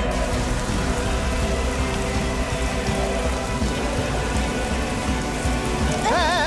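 Water spraying from a garden hose in a steady hiss that starts suddenly, over background music.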